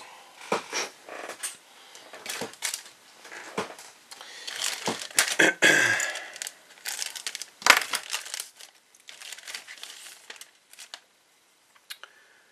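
Clear plastic bag crinkling and rustling as a plastic model kit sprue is pulled out of it, in irregular bursts loudest around the middle, with a sharp tap of the plastic sprue about two-thirds of the way through.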